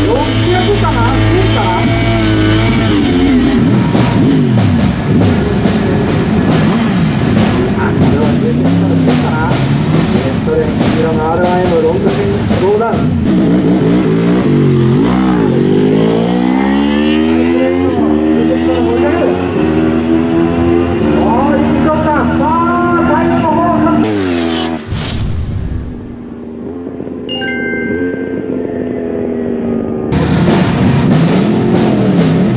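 Two litre-class sport bikes, a Yamaha YZF-R1 and a Suzuki GSX-R1000R, in a drag race, their inline-four engines revving at the line and then accelerating hard through the gears, the pitch climbing and dropping with each upshift. The engine sound falls away about 25 seconds in, and a short chiming sting follows near the end.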